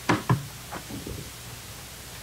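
Two sharp knocks about a quarter second apart, followed by a few fainter short sounds.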